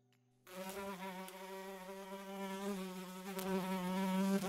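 Housefly buzzing: a steady, slightly wavering buzz that starts about half a second in and grows gradually louder as the fly comes near.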